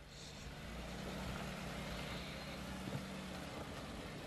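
Jeep Wrangler Rubicon's engine running steadily at low revs as it crawls slowly over rocks.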